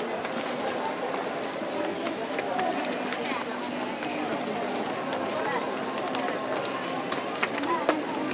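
Large crowd outdoors: a steady babble of many overlapping voices talking at once, none of them clear.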